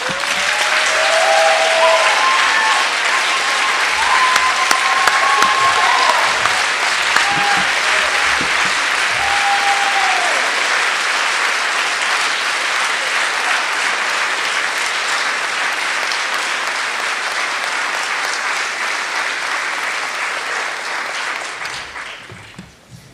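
Audience applauding in a large room after a speech, with a few cheers and calls over the first ten seconds or so. The applause holds steady, then tapers off near the end.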